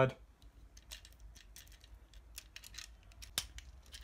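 Plastic parts of a Transformers Studio Series Optimus Prime action figure being handled and pushed into place by hand: a string of small, light clicks and taps, with one sharper click about three and a half seconds in.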